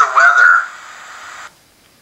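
A stored Amazon Echo voice recording played back through a smartphone's small speaker: the tail of a man's command, sounding thin and tinny, ends about half a second in. A steady hiss follows and cuts off suddenly about a second and a half in, where the recording ends.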